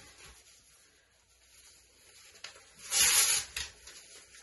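Newspaper being torn by hand: a quiet start, then a short hissy rip about three seconds in, trailing off in a few smaller tears.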